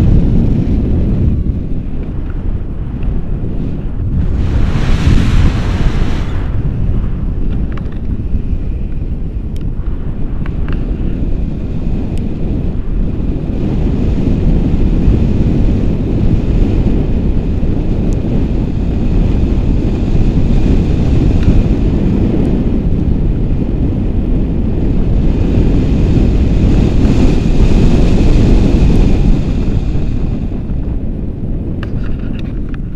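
Wind rushing over the microphone of a camera held out in the airflow on a paraglider in flight: a loud, steady low rush, with a stronger gust about five seconds in.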